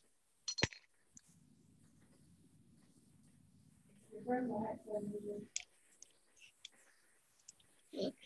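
A hair dryer blowing, heard only as a faint low hum, with sharp clicks near the start and a brief pitched, voice-like sound in the middle.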